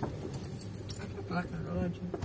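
Inside a car moving slowly over a rough dirt street: a steady low engine and road rumble with light rattles from the cabin.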